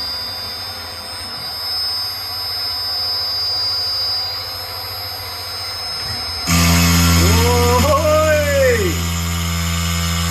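Milo v1.5 mini mill's spindle running with a steady high whine; about six and a half seconds in, the 6 mm single-flute end mill bites into the plastic block and the sound suddenly gets louder with a heavy hum of cutting. A second whine rises and falls in pitch as the table moves during the cut.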